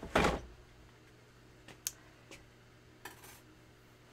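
A short scrape and knock as a manual die-cutting machine is slid aside on the work table, followed by near silence with a few faint light clicks.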